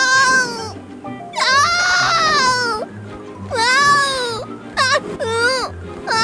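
A cartoon character's high-pitched, wavering cries, about five in a row, one of them long, over light background music with a steady low beat.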